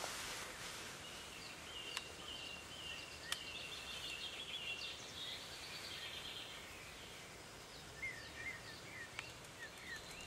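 Faint wild birdsong over a steady river hiss: a run of short, high chirping notes in the first half, then a few short rising calls near the end, with a few faint clicks.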